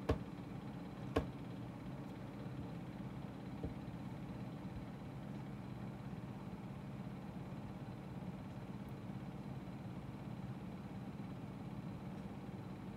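Steady low room hum with two sharp clicks in the first second or so and a fainter click a few seconds in.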